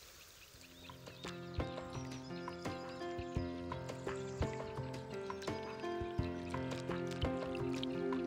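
Background music: a melody of short, ringing notes over held chords, fading in about half a second in and slowly getting louder.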